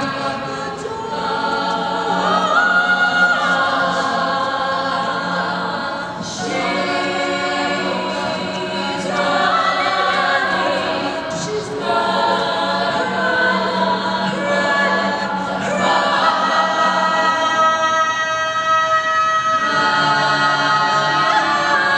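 All-female a cappella group singing in close harmony, with a steady low bass note held under the chords for most of the stretch; the chords shift to new phrases every few seconds.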